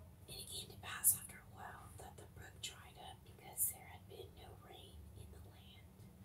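Whispered speech: a passage of scripture read aloud in a whisper, with a few sharp hissing s sounds.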